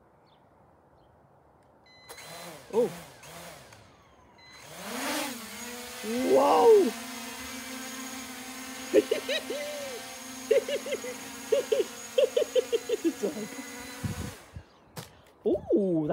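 Holy Stone HS720 quadcopter's brushless motors spinning up after a short beep, then the propellers humming steadily with many overtones as it takes off and hovers. Near the end the hum cuts off suddenly as the lock button is held and the rotors stop, followed by a single knock as the drone drops onto the grass.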